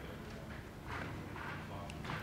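Faint room noise in a conference hall: footsteps and shuffling, with low voices in the background.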